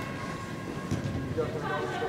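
Voices calling out across a large indoor sports hall, echoing, over a low rumble of room noise.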